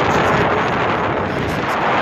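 Strong wind buffeting the phone's microphone: a loud, steady rushing noise.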